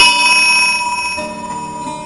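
Brass temple bell ringing after a strike: a clear metallic ring of several tones, loudest at first and slowly fading. Background music plays softly beneath it.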